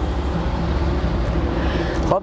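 An idling car engine: a steady low rumble with a faint, even hum above it.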